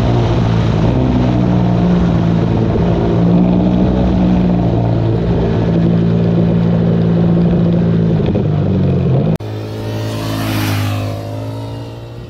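Ducati motorcycle engine heard from on board, running under steady throttle at speed, its note holding nearly level with small rises and dips. About nine seconds in it cuts off abruptly to a motorcycle heard from the roadside, its engine note swelling and then falling in pitch as it goes past.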